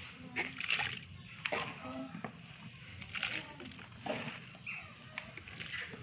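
Water splashing and sloshing in irregular strokes as handfuls of lemon slices are dropped and pushed into a plastic drum of water.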